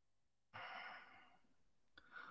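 Near silence, broken by one soft breath, a short exhale or sigh, about half a second in.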